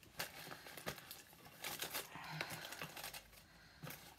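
Soft rustling and crinkling as a ribbon is untied from a cardboard gift box and the packaging is handled, with a few light clicks and taps.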